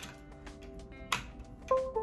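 A USB plug clicks into a laptop port, followed by the short two-note Windows device-connect chime, which signals that the repaired port has detected the device. Faint background music runs underneath.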